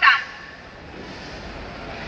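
A voice through a megaphone trails off with a falling pitch right at the start, then a pause filled only with steady, low street background noise.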